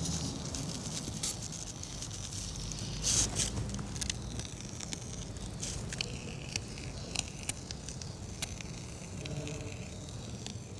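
Polyurethane expanding foam being sprayed from an aerosol can, hissing with scattered small clicks and a louder spurt about three seconds in.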